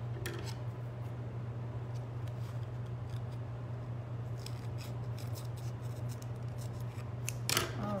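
Scissors snipping through a self-adhesive craft foam sheet in a few scattered clusters of small cuts, over a steady low hum.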